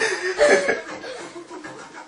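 A person chuckling in short bursts during the first second, then fading away.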